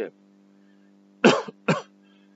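A man coughs twice in quick succession, a little over a second in, the two coughs about half a second apart.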